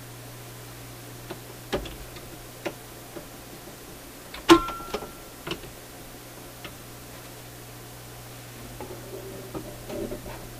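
Scattered sharp clicks and knocks from a General Electric C-411 record player's controls and tone arm being handled. The loudest is a click about four and a half seconds in, followed by a brief ringing tone. A steady low hum runs underneath.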